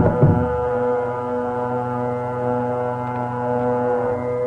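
Carnatic classical music in raga Varali closing on a long sustained note over a steady drone. The drum strokes stop about half a second in, leaving the held note ringing.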